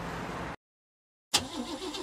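A steady low engine rumble, as of a vehicle idling, cuts off abruptly about half a second in. A brief dead silence follows, then the rumble starts again suddenly.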